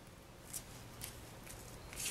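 Faint paper-handling sounds: a few soft, light ticks as the backing is peeled off a small foam adhesive dimensional and a paper butterfly is pressed onto a card.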